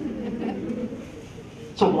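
A man's low, drawn-out vocal sound that trails off over the first second, then the start of his speech near the end.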